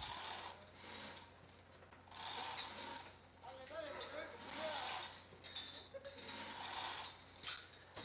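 Faint, intermittent rubbing and rattling of a rope being hauled by hand through a pulley, hoisting equipment up a truss tower.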